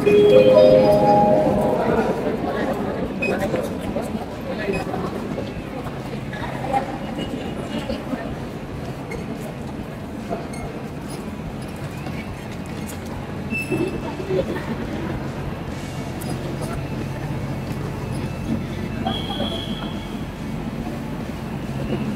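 Busy railway station concourse ambience: background voices and movement of passengers over a steady low hum, with a short rising chime of a few notes at the start and a couple of brief electronic beeps later on.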